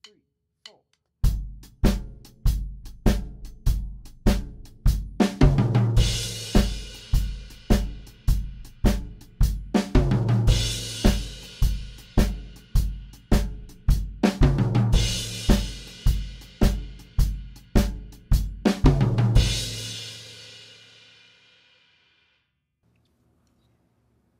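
Drum kit playing a groove in triplet feel, with a descending fill around the drums at the end of every second bar, four times, each landing on a cymbal crash. The last crash rings out and fades away.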